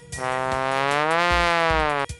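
A trombone playing one long, buzzy low note that slides slightly up in pitch and back down, over a soft background beat.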